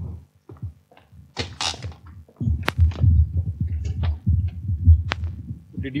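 Handheld microphone being handled: irregular low thumps and rumbling, with two sharp clicks, one just under three seconds in and one about five seconds in.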